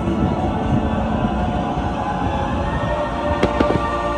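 Nighttime fountain-and-fire show soundtrack playing loudly and steadily over outdoor speakers, with a couple of sharp bangs near the end as the show's fire effects go off.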